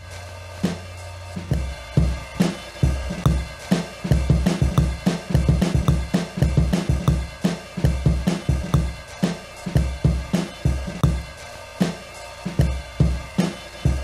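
A classic drum loop of kick, snare and hi-hats, played back through Bitwig Studio's slice-mode stretching while the project tempo is swept. The hits come slowly at first, pack together quickly in the middle, and spread out again near the end, each slice keeping its own pitch.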